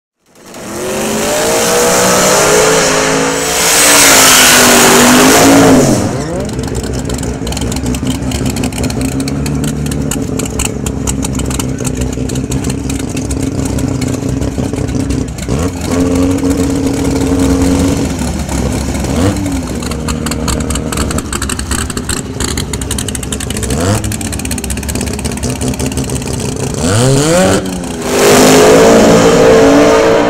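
Supercharged drag-car engine of a Procharged Mopar Dodge Challenger, loud with a hiss during a burnout early on, then running steadily with a few revs while it stages. Near the end the revs rise and it goes to full throttle on the launch.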